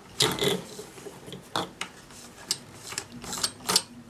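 Irregular metallic clicks and small rattles from the bobbin area of a vintage Pfaff 30 sewing machine as the bobbin is put back in and the bobbin thread recaptured, the loudest clicks near the start and near the end.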